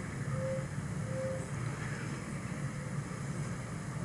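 Low, steady background noise of the broadcast audio, mostly a low hum, in a pause between spoken phrases, with two faint short tones in the first second and a half.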